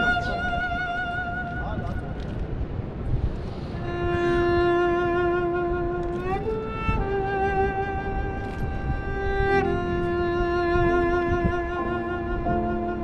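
Solo cello played with a bow: a slow melody of long, held notes with vibrato. After a short break about two seconds in, one note slides up about six seconds in, and the phrase then steps down to lower notes near the end.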